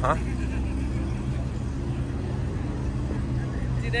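A car engine running at idle: a steady low hum.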